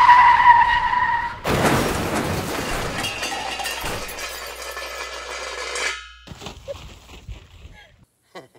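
A train crash: a high screeching tone that falls slightly in pitch, then about a second and a half in a sudden loud crash of a railway carriage breaking up. The crash noise fades slowly over about four seconds and cuts off sharply.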